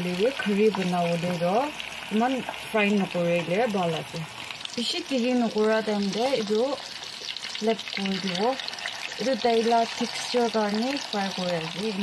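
Rohu fish pieces frying in hot oil in a non-stick pan, a steady sizzle. In the second half a utensil turning the pieces adds light scrapes and clicks. A voice speaks over the frying throughout.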